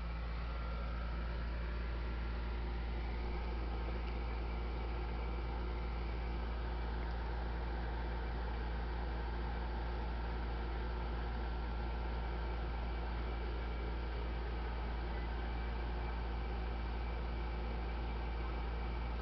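Steady low hum with even hiss, unchanging throughout: room background noise.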